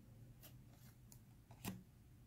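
Faint handling of a stack of tarot cards, a card slid off the deck and placed at the back: a few soft swishes, then one sharper tap near the end.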